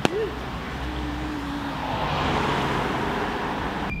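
Street traffic: a car driving past, its engine and tyre noise swelling about two seconds in and easing off again.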